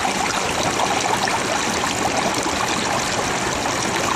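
Water flowing steadily over the riffles of a gold sluice box.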